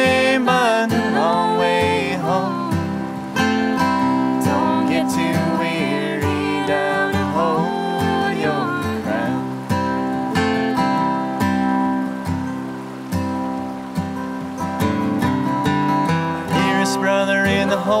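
Acoustic folk song: a steel-string acoustic guitar strummed steadily, with a man and a woman singing together in places.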